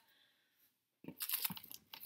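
Near silence for about a second, then a quick run of short rustles and light clicks as things are handled and shifted about.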